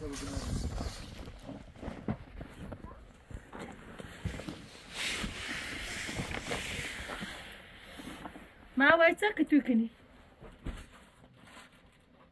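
Rustling and scuffing of people pushing in through a tent's plastic-sheet door flap, with a spell of louder crinkling in the middle. A short burst of a high voice comes near the end.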